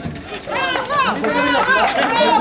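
People's voices talking and calling out, with chatter around them; the voices rise from about half a second in.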